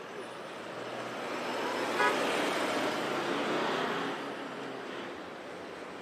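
A vehicle passing close on a road, its noise swelling and then fading, with a very short horn toot about two seconds in.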